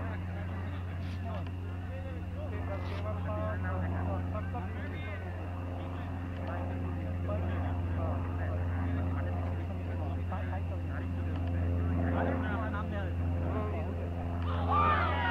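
A steady low mechanical drone, like a running motor, holding one pitch throughout, with faint scattered voices of people talking on the field.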